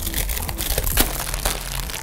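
Packaging crinkling and rustling as cardboard blind boxes are opened and the foil-wrapped mystery mini figures are pulled out. It is an irregular run of crackles, with the sharpest one about a second in.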